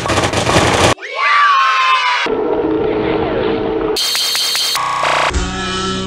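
Chopped, rapid-fire audio collage of short snippets cut off abruptly one after another: a busy noisy stretch, a sliding pitched sound, held electronic tones, a harsh high buzz, then music with a steady beat near the end.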